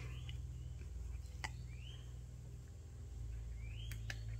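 Quiet handling sounds: faint clicks of a small paintbrush dabbing metallic powder inside a silicone mold, over a low steady hum. Three faint, short rising chirps come and go.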